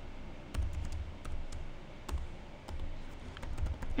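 Typing on a computer keyboard: irregular keystrokes entering code, over a low hum.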